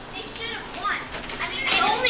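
Children's voices, shouting and chattering, growing louder near the end.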